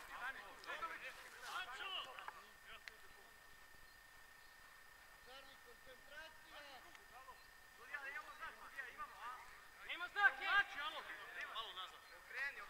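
Players shouting to each other across an open football pitch, heard at a distance. There is a burst of calls at the start, a quieter stretch, then denser shouting from about eight seconds in.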